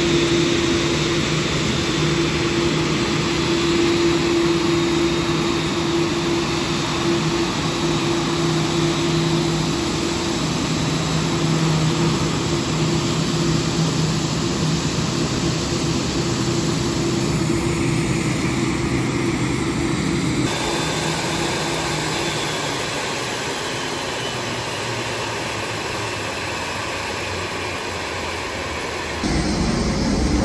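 Steady airport ramp noise: the continuous whine and hum of jet turbines and ground service equipment around a parked airliner, with two constant low hum tones under a wide roar. The sound shifts about two-thirds of the way in and again just before the end.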